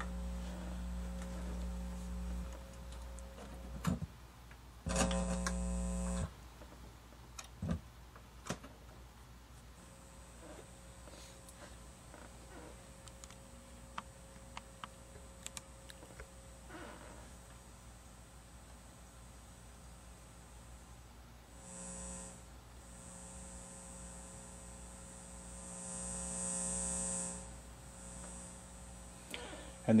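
Mains hum from a Dual 1229 turntable's output, the grounding fault (or feedback) that the owner points out. The hum is steady at first, then comes as a short loud burst about five seconds in with a few clicks. After that it goes mostly faint, with two swells of hum and hiss late on, as the output drops out.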